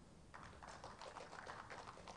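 Faint scattered applause: a quick, irregular patter of claps starting about a third of a second in.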